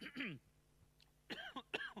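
A man coughs briefly into his fist near his handheld microphone, a short burst at the start, then a couple of short voiced sounds in the second half as he resumes speaking.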